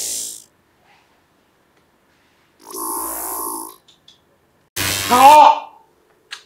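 A man's wordless vocal sounds: a breathy hiss at the start, a strained groan about three seconds in, and a louder cry with a wavering pitch near the end, which is the loudest sound.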